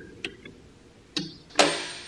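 A few light, sharp metal clicks of a half-inch wrench being fitted onto a mower's engine bolt, then a short, louder rasp near the end.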